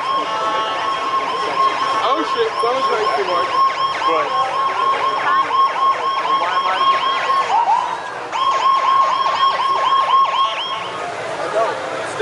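Electronic emergency-vehicle siren in a fast yelp, about four sweeps a second, breaking off briefly just before two-thirds of the way through and then starting again, over crowd voices.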